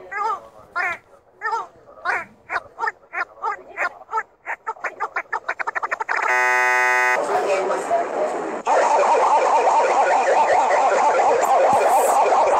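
Edited video soundtrack: a short squeaky 'meep' call repeated over and over, speeding up until the calls run together. Then a steady buzzing tone for about a second, then a dense, garbled jumble of layered sound that jumps louder about nine seconds in.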